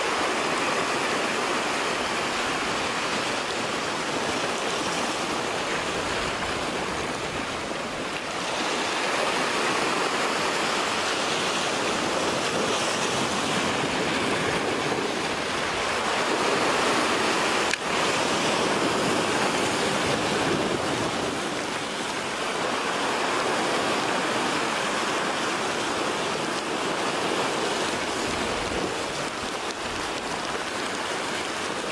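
Sea surf washing against a rocky shore: a steady rush of water that swells and eases slowly.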